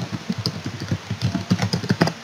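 Computer keyboard typing: a rapid, steady run of keystrokes, several a second.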